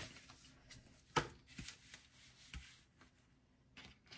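Paper sticker sheets handled and slid across a desk: faint rustling with a few light taps, the sharpest about a second in.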